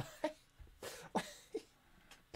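A man laughing quietly under his breath in a few short, breathy huffs.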